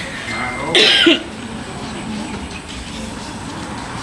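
A single loud cough about a second in, over a faint background of voices.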